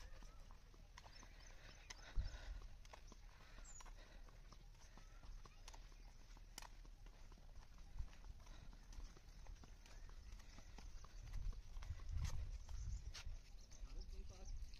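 Faint footsteps of people walking on a paved path: irregular light clicks and scuffs, with a sharper knock about two seconds in and a low rumble near the end.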